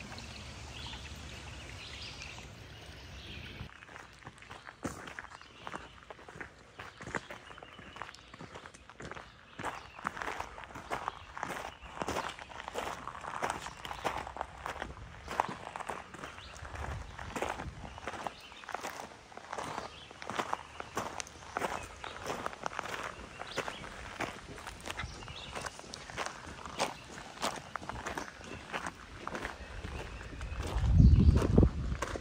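Footsteps crunching on a freshly laid gravel driveway at a steady walking pace, starting about four seconds in after a low steady rumble.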